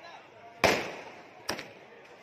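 Fireworks bursting overhead: two sharp bangs, a loud one about half a second in and a smaller one near the end, each trailing off in a short echo.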